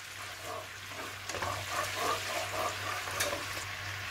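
Lemon juice, salt and a little water simmering and sizzling with an oil tempering of mustard seeds, dals, dried chillies and curry leaves in a nonstick pan, stirred with a wooden spatula. It is being brought to a light boil to dissolve the salt.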